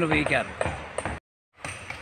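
A person speaking in the first second, then a brief gap of dead silence where the recording is cut, followed by faint background sound.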